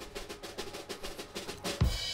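Drum roll of rapid, evenly spaced snare strokes, ending on a louder deep hit near the end: a suspense roll before a winner is announced.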